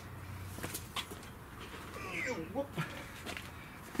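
Quiet room with a few soft knocks and footsteps of someone walking away, and a faint distant voice a couple of seconds in.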